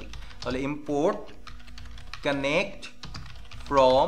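Typing on a computer keyboard: runs of quick key clicks, broken by short stretches of a man's voice, the loudest just before the end.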